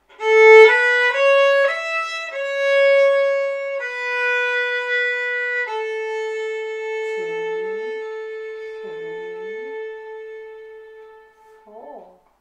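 Solo violin playing a closing phrase: a few quick notes, then longer notes as the tempo slows, ending on one long held note that fades away to nothing over about five seconds, played softly with a ritenuto and a diminuendo.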